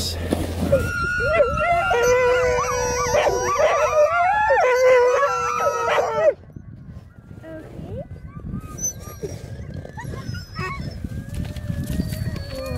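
A team of Greenland sled dogs howling and yelping together at feeding time, many voices gliding up and down over one another. The chorus cuts off abruptly about six seconds in, leaving fainter, scattered yelps and whines.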